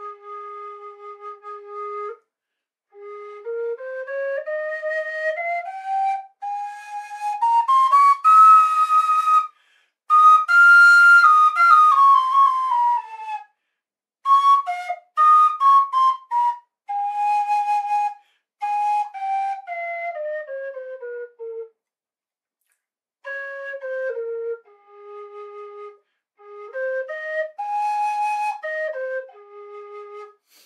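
Carbony carbon-fibre low whistle in A-flat being played: it holds its low bottom note, then runs stepwise scales up into the second octave and back down in several runs with short pauses. Some notes come out odd because the finger holes are not fully covered, and the loudest high notes are clipped in the recording.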